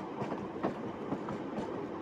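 Steady background rumble of a train running, heard from inside a passenger carriage, with a few faint clicks.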